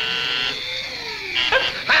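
Electric buzzer sounding in long steady stretches broken by short gaps. A lower tone slides up and then down beneath it.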